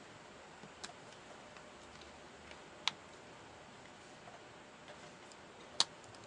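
Stainless steel watch bracelet and folding clasp clicking faintly as they are handled. There are a few sharp, irregular metal clicks, the loudest about three seconds in and another just before the end, over faint hiss.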